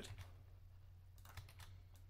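Near silence with a few faint computer keyboard clicks a little over a second in, over a low steady hum.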